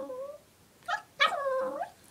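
Small puppy making drawn-out whining "talking" vocalizations. One ends shortly after the start, a short yip comes about a second in, and then a longer pitched whine bends upward at its end.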